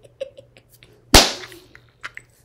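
A single loud, sharp hand slap about a second in, dying away quickly, amid quiet laughter.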